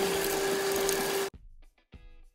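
Vacuum cleaner running with a steady hum and small clicks as its nozzle sucks shattered rear-window glass crumbs out of a car's window frame. It cuts off abruptly a little over a second in, leaving soft plucked guitar music.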